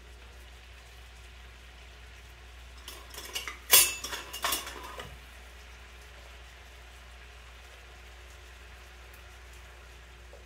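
Metal kitchen utensils clattering against pans and dishes, a few sharp clacks between about three and five seconds in, the loudest near four seconds. Under them, beef pieces in gravy fry faintly and steadily in a skillet.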